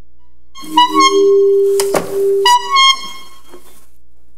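Comic reedy honking horn sounds: a honk about a second in that runs into a held lower note, a sharp knock near the middle, then two shorter honks near the end.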